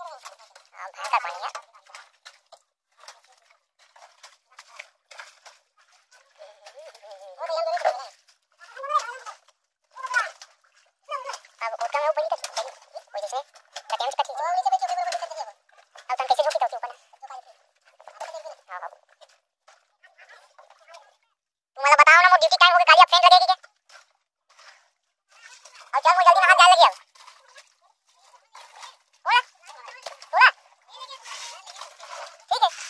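People talking on and off, with two loud, drawn-out calls about twenty-two and twenty-six seconds in.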